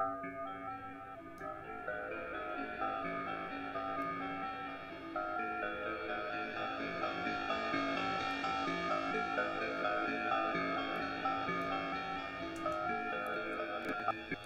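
A looped melodic electronic part played through Ableton's Shifter effect with its delay feedback and drive turned up, so the notes repeat in echoes with a gritty pitch-shifted edge. The sound grows brighter and a little louder about five to six seconds in.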